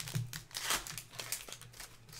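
Foil wrapper of a Topps Chrome Update trading-card pack crinkling and tearing as it is pulled open by hand, in short irregular bursts.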